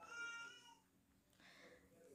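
A faint, short, high-pitched animal-like cry lasting about half a second at the start, otherwise near silence.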